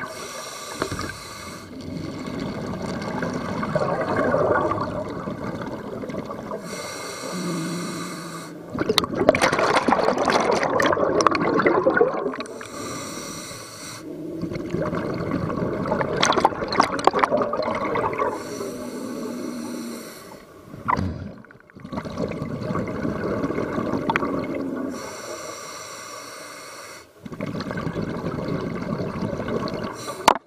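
Scuba diver breathing through a regulator underwater: a hissing inhale followed by a loud burst of bubbling exhaust, repeating roughly every six seconds.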